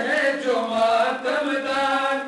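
Men's voices chanting a Shia Muharram mourning lament (nauha), a continuous melodic chant whose pitch rises and falls.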